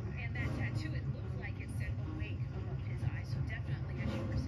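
Indistinct voices in short fragments over a steady low rumble.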